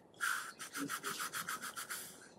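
A quick series of rubbing strokes, about seven a second, starting a moment in and lasting almost two seconds.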